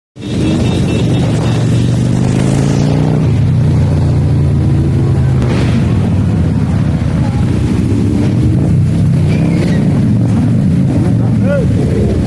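Many motorcycle engines running together as a column of motorbikes rides past, a steady low drone with some revving rising in pitch in the first few seconds.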